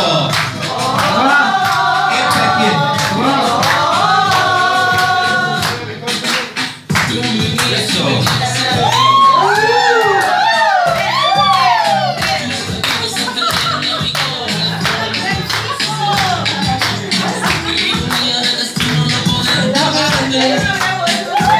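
Dance music with a singer over a steady beat, playing loudly; it dips briefly about six to seven seconds in.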